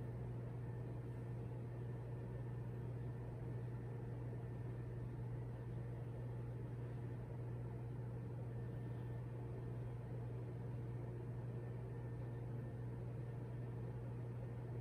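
Room tone: a steady low hum with a faint even hiss, unchanging throughout, with no pencil strokes or other events.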